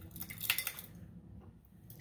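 A few brief, light clinks and taps of dishware being handled as a dab of hot sauce is put onto food, the strongest about half a second in.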